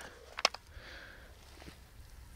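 Two quick, faint clicks about half a second in, from a hand handling the black plastic traps inside a wooden trap box, against a quiet background.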